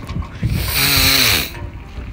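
A loud, breathy vocal sound from a man, about a second long, falling in pitch at the end, like a drawn-out "haaa".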